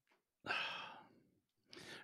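A person sighing into a close microphone: one breathy exhale about half a second in that fades away, then a short, quiet breath in near the end.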